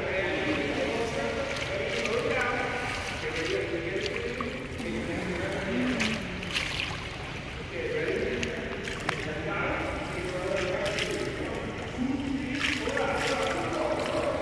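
Indistinct voices and water splashing in an indoor swimming pool, with a few short, sharp splashes about six, nine and eleven seconds in.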